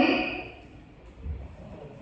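A woman's voice through a microphone trails off, leaving a pause of quiet room tone with one dull low thump a little over a second in.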